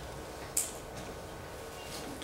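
Felt-tip marker writing on a whiteboard: one short, high scratchy stroke about half a second in, over a low steady room hum.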